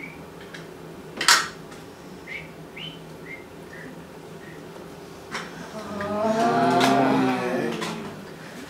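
A sharp click about a second in, a few faint short squeaks, then a drawn-out hummed vocal sound from a person that rises and falls in pitch for about two seconds near the end.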